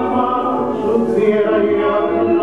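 Argentine tango song playing, a singer's voice holding long sung notes over the accompaniment.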